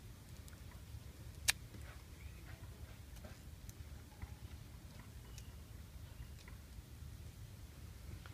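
Scissors snipping and scraping at the tough, woody stem base of a fresh red reishi mushroom: scattered faint clicks and crunches, with one sharp snip about a second and a half in.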